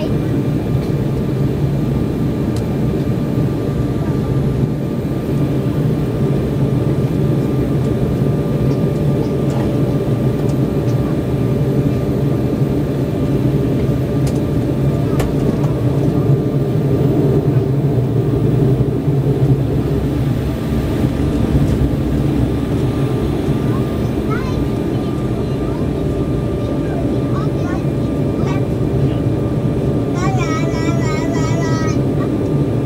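Steady cabin noise inside an Embraer 190 airliner taxiing on the ground: its twin General Electric CF34 turbofans running at low taxi power, giving an even low hum and rush with no change in pitch.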